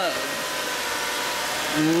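Toyota Camry Solara's 3.3-litre VVT-i V6 idling, heard from over the open engine bay as a steady, even rush of engine and accessory noise.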